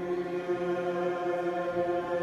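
Small congregation chanting together, holding long, steady notes.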